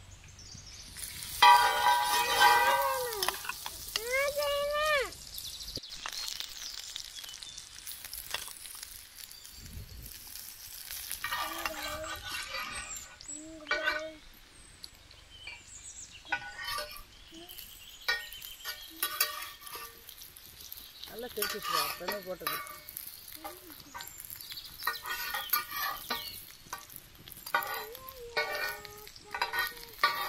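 Chapathi banana rolls frying in oil on a hot iron tava over a wood fire, a steady sizzle, loudest in the first few seconds.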